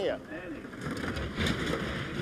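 Two-woman bobsleigh running down the ice track: a steady rushing noise of the steel runners on ice, a little louder about one and a half seconds in as it passes.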